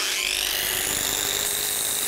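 Hand-held angle grinder switched on, its high whine climbing quickly as the disc spins up, then running steadily at full speed.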